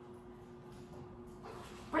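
A young silver Labrador retriever whimpering faintly.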